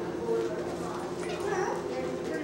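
A small Bichon-mix dog whimpering briefly about halfway through while play-wrestling a young Barbary sheep. Low voices and a steady hum run underneath.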